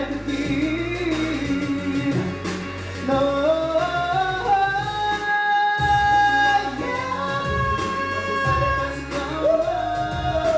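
Male vocalist singing a pop ballad live into a handheld microphone over a backing track with bass and beat, sustaining a long held note around the middle; the bass drops out briefly during that note.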